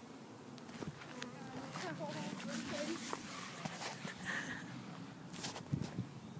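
Honeybees buzzing in a low, steady hum around an open hive freshly stocked with a package of bees, with faint voices and a few light clicks of handling.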